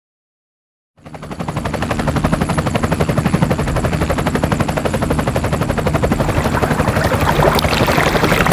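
Helicopter rotor chopping rapidly over a steady high whine, starting about a second in and growing a little louder.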